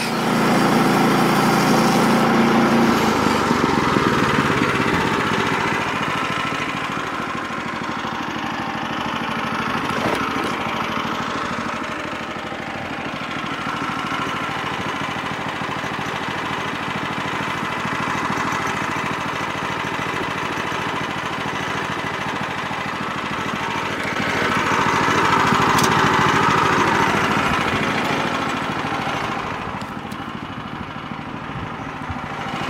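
Small gasoline engine of a Woodland Mills portable bandsaw sawmill running steadily. It is louder for the first few seconds and again for a few seconds near the end.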